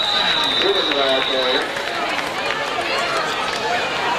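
Spectators' voices chattering and calling out, with a referee's whistle blowing one steady high note for about a second and a half at the start, signalling the end of the play.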